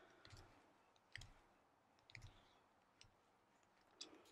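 Near silence with a few faint, short clicks about a second apart, some with a soft low thud under them.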